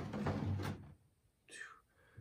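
Low, whispered-sounding speech with rustling handling noise in the first second, then a short murmured vocal sound about one and a half seconds in.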